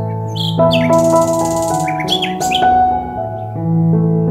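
Gentle piano background music with held notes, with a series of quick bird calls over it in the first three seconds.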